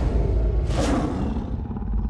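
Trailer title-card sound design: a deep low boom and an animal-like roar sound effect over music, swelling about half a second in and dying away in the second half.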